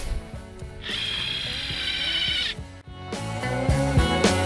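Cordless drill whirring for about a second and a half as it drives a screw-in tent peg into the ground, over background music that carries on alone near the end.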